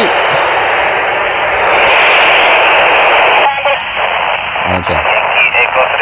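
FM radio receiver hiss from a handheld transceiver's speaker tuned to the IO-86 satellite downlink: loud, even static for about three and a half seconds, the sound of the receiver with no usable signal. Then the hiss drops and faint, choppy voices of other stations come through the satellite repeater.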